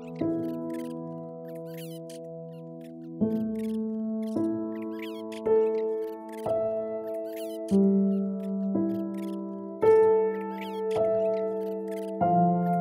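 Slow, calm piano music. One chord rings for about three seconds, then a new chord is struck roughly once a second. Faint high chirps are mixed in throughout.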